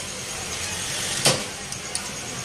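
A silicone spatula stirring slivered almonds and pistachios as they dry-roast in a flat nonstick pan, over a steady hiss, with one sharp tap of the spatula about a second in and a lighter one near the end.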